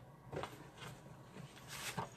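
Sheets of cardstock being handled and moved on a craft table: a few short, soft rustles and taps, then a longer sliding rustle of paper near the end.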